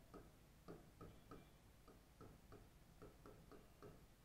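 Near silence, with faint light ticks about three a second from a stylus tapping and stroking across an interactive whiteboard screen as words are written.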